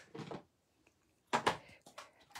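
Clear acrylic stamp blocks being handled and set down on the craft mat: a faint rustle near the start, then two sharp plastic clacks close together about a second and a half in.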